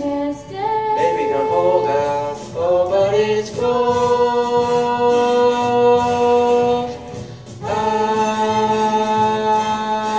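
A girl and a boy singing a duet into handheld microphones. About a third of the way in they hold one long note for roughly three seconds, then after a short breath they hold another long note near the end.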